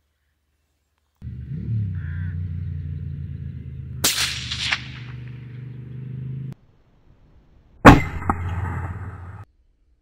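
Two moderated .204 Ruger rifle shots, a sharp crack about four seconds in with a smaller sound just after it, then a louder crack with a short ringing tail near the end. A steady low drone runs under the first shot.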